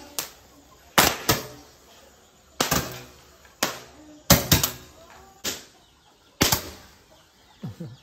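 Hand-held Roman candle fireworks firing shot after shot: a string of sharp pops, each dying away quickly, at uneven intervals of about a second.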